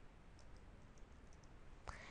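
Faint computer keyboard keystrokes, a few quick taps in a row, against near-silent room tone.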